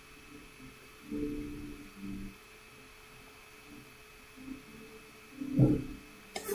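Faint, muffled voices in a few short snatches, about a second in, at two seconds and near the end, over a faint steady hum.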